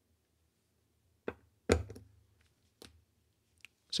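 Forked spring bar tool working a spring bar out of a steel watch case's lug to free the steel bracelet: a few sharp metallic clicks, the loudest a little under two seconds in as the bar snaps free, trailing off briefly.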